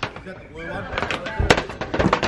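Knocks and thuds on corrugated roof sheeting as someone moves across it, with one sharp, louder knock about one and a half seconds in.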